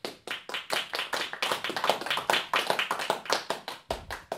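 A small audience clapping in a small room, the individual hand claps distinct and irregular, following the final piano chord of a classical performance.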